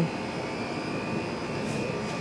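Steady background drone with a faint high whine running through it, and no distinct events.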